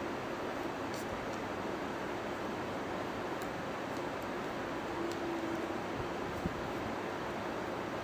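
Steady background hiss with a few faint light clicks.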